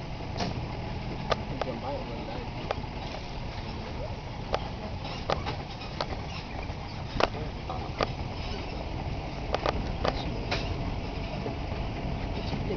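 A truck driving slowly over a rough grass-and-dirt track: a steady low engine and road rumble, with frequent irregular knocks and rattles as it goes over the bumps.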